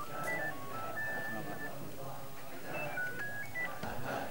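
A mobile phone's monophonic ringtone playing a short melody of clean beeps, with one long held note about a second in, then the tune starting over near the end, over murmured talk from a crowd.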